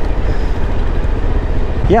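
Suzuki V-Strom motorcycle engine running at low speed in slow traffic, a steady low rumble, with wind rushing on the microphone.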